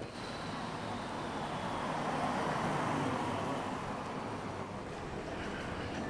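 City street traffic noise: a steady rush that swells around the middle and then eases off, as of a vehicle going by.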